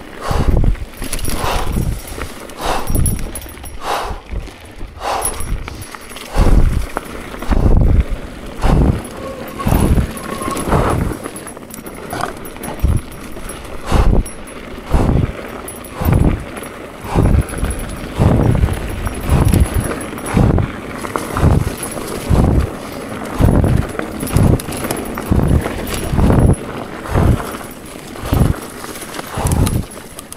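Mountain bike ride on a dirt singletrack heard close to a body-mounted camera: short thumps, irregular at first, then settling into a steady rhythm of about three every two seconds about six seconds in, over constant trail noise.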